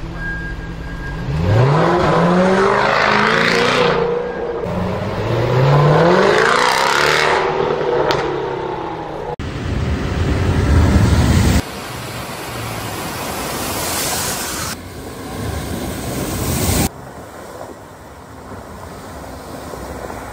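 Car clips cut one after another: an SUV engine revving hard twice, each time rising in pitch, followed by vehicles driving through water with a rushing, splashing noise. The sound changes abruptly at each cut.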